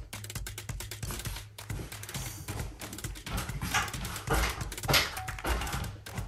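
Men breathing hard after heavy lifting, with scattered small knocks and clicks.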